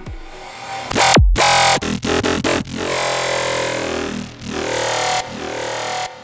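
Growl bass preset on the Xfer Serum software synthesizer playing a dubstep bass phrase. A loud hit comes about a second in and is followed by a sudden short cut-out. Longer held notes follow, their overtones sweeping up and down, and the phrase stops abruptly at the end.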